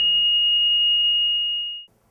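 Patient monitor flatline alarm: one steady high-pitched tone, showing that no pulse is detected, that cuts off suddenly just before the end, with faint lower tones beneath it.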